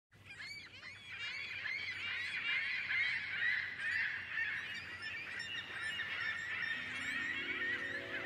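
A large flock of birds calling over one another, many short overlapping calls in a dense chorus, fading in from silence at the start. Near the end, low sustained analog-synthesizer notes begin underneath, stepping in pitch.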